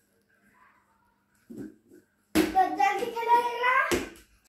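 A boy's long wordless shout, coming in suddenly with a sharp knock after more than two seconds of near silence and rising slightly in pitch as it is held.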